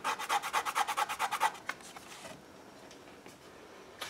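A fingernail scratching a scratch-and-sniff strawberry patch on a book page to release its scent, in quick rapid strokes about nine a second. The strokes fade after about a second and a half and stop a little past halfway.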